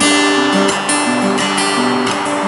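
Guitar strummed in a live folk song, an instrumental bar between sung lines, with several strums and the low notes stepping from chord to chord.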